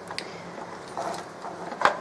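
Plastic battery-charger case handled and turned over on a wooden workbench: faint sliding and rubbing, with a sharp knock shortly before the end.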